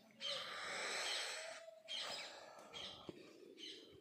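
Birds chirping and calling, several short calls over a hissing background.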